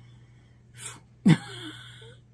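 A woman's voice: a brief breathy intake, then a sudden, sharp vocal burst falling in pitch that trails off into a breathy hiss.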